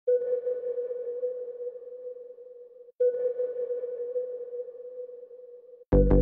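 Opening of an instrumental beat: a single held synth note with a faint higher overtone sounds twice, each about three seconds long and fading. Just before the end the beat comes in with a loud drum hit and deep bass.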